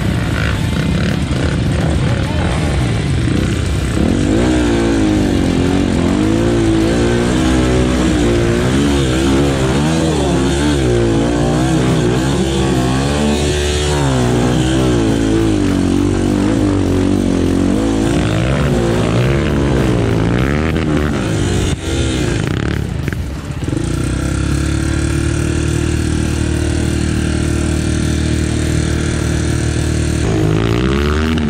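Dirt bike engine under load on a trail climb, its pitch rising and falling repeatedly as the throttle is worked on and off. After a short dip it holds a steady, even note for the last few seconds.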